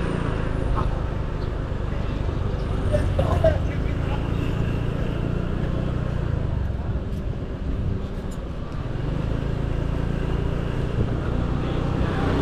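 Motor scooter engine running steadily while riding, with road and wind noise. The engine note sags briefly a little past the middle, then picks up again.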